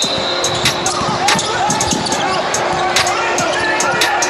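A basketball dribbled on a hardwood gym floor: separate sharp bounces every half second to a second, over the chatter of people in the hall.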